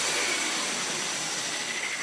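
A hiss of noise, like a white-noise sweep in an electronic music track, fading slowly during a break between musical phrases.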